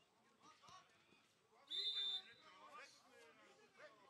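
A referee's whistle gives one short, steady blast of about half a second, a little under two seconds in. It sounds over faint shouts from players and onlookers.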